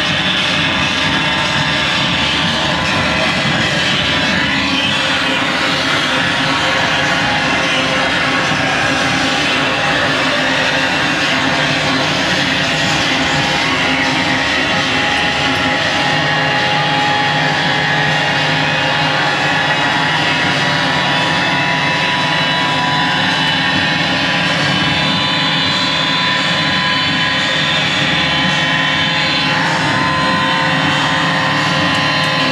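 Live harsh noise music from electronics: a loud, unbroken wall of dense noise with sustained steady drone tones layered through it, holding one level throughout.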